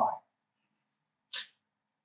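The last word of a man's speech fades out, then silence broken about a second and a half in by one short, soft breath-like noise, most likely a quick intake of breath before he speaks again.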